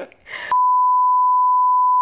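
A steady single-pitched bleep lasting about a second and a half, starting about half a second in after a brief spoken sound, with all other sound cut out beneath it: an editing censor bleep laid over the dialogue.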